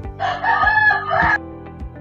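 A rooster crow, one call about a second long, laid over background music with a steady beat.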